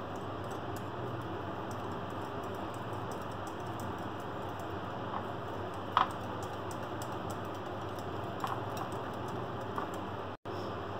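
A small wire whisk stirring cocoa powder into cream in a ceramic bowl, with a few light ticks of the whisk against the bowl, the clearest about six seconds in, over a steady low background hum.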